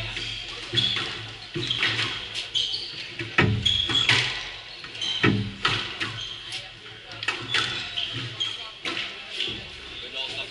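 Echoing squash-hall sounds: repeated short, high shoe squeaks on a wooden court floor and scattered knocks, with voices in the background.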